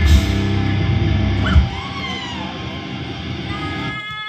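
Live rock band ending a song: drums and electric guitar hit a final accent about a second and a half in, and the last chord rings on and slowly fades. Short high-pitched whoops rise over the ringing chord.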